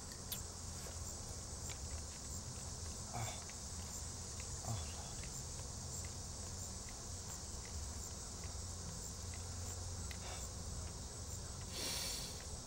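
A steady, high-pitched outdoor insect chorus over a low background rumble, with a few faint soft ticks.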